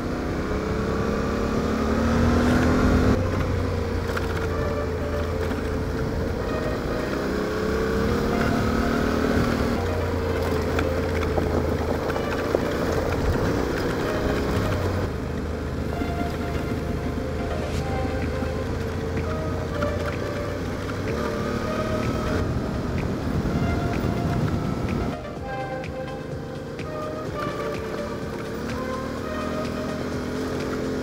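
Yamaha Ténéré 700's parallel-twin engine running under way, its pitch rising and falling gently with the throttle, under background music. The sound gets a little quieter about 25 seconds in.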